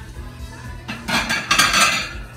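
Plates and dishes clattering and clinking against each other as they are handled, in two quick bunches starting about a second in.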